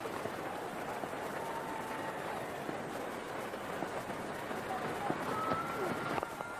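Steady hubbub of a cricket stadium crowd from the stands, as carried on the TV broadcast.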